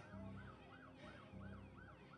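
A faint emergency-vehicle siren in a fast yelp, its pitch sweeping up and down about four times a second.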